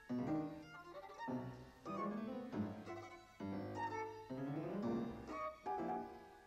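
Classical music: a violin playing, with a lower accompaniment beneath it, in phrases that change about once a second.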